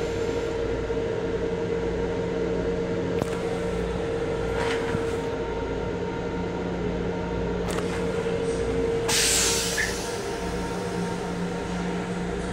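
An M7 electric railcar in motion, heard from inside its restroom: a steady rumble under a steady low hum, with a few short knocks. The loudest is a brief rush of noise about nine seconds in.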